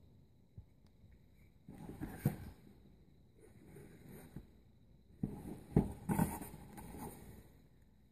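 Handling noise from an air pistol being lifted and turned in its cardboard case: rustling and a few light knocks, in one burst about two seconds in and a longer one from about five to seven seconds.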